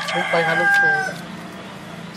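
A rooster crowing, its long held final note cutting off about a second in.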